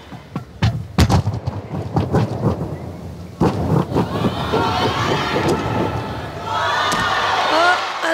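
Running footsteps and a quick series of thumps of feet and hands striking a sprung tumbling track during a gymnastics tumbling pass. Crowd noise and cheering swell over the last couple of seconds as the gymnast lands.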